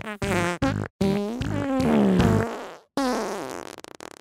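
Comic music made of pitched fart-noise samples. A few quick short blasts come first, then a long drawn-out one that rises slightly and sags in pitch, then a shorter falling one that fades out near the end.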